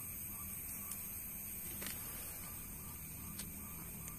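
Quiet, steady low hum and hiss of background noise, with two faint clicks, one about two seconds in and one near the end.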